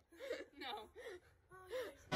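Four faint, short vocal sounds, each rising and falling in pitch, like gasps or whimpers.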